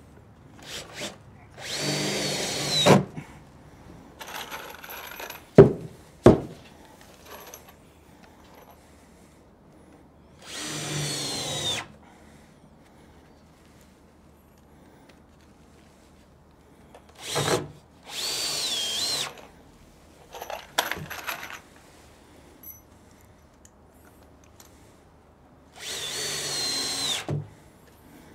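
Power drill driving screws into two-inch wooden planks: four separate runs of a second or two each, the motor whine dropping as each screw seats and the trigger is released. Two sharp knocks, the loudest sounds, fall between the first and second runs.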